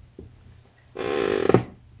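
A light click as a small plastic action figure is lifted off a desk. About a second in comes a short, breathy voice sound from the person handling it.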